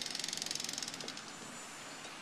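Construction machinery hammering in a rapid, even rattle that eases off about a second in.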